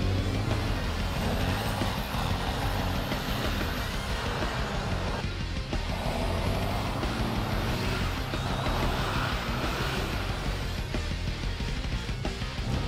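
Engine of a Cadillac Gage V-100 armored car running steadily as it drives across a grass field, with background music alongside.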